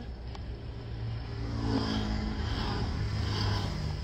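Steady low rumble of a car heard from inside the cabin, swelling slightly in the middle.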